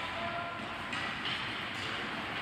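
Steady noise of an ice hockey rink during play: skates scraping and carving the ice under the general hum of the arena, with a few faint brief high sounds near the start and about a second in.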